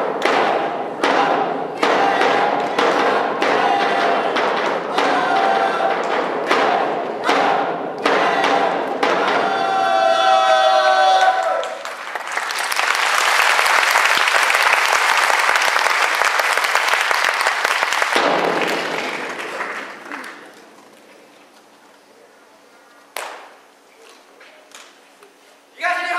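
A cheer squad calling out together in unison over a steady beat of about one strike a second, ending in one long held shout about ten seconds in. Audience applause follows and dies away by about twenty seconds in.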